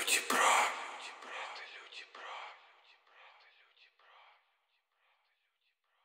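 A whispered voice, loudest in the first second and then repeating ever more faintly, like an echo, until it dies away about four seconds in.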